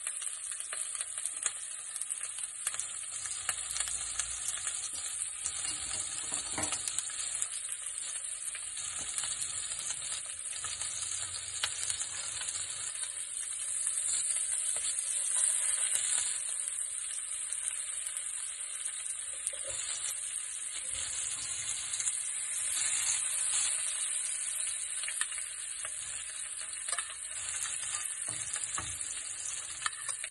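Steak, garlic and thyme sizzling in foaming butter in a stainless steel frying pan, with fine crackles throughout. The sizzle grows louder around the middle, where the steak is turned with tongs.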